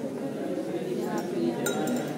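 A brief light clink of glassware near the end, ringing briefly, over background voices.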